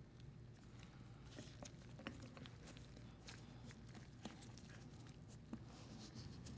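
Near silence with a few faint, scattered clicks and taps of small metal valve parts being handled and fitted together by gloved hands.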